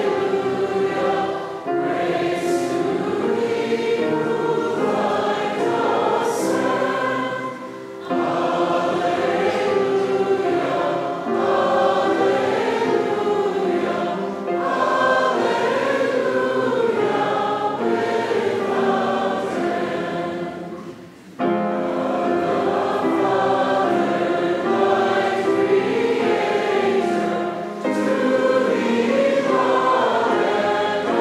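A congregation singing a hymn stanza together, the many voices holding long sung notes. Brief breaks for breath come about a quarter of the way in and about two-thirds of the way through.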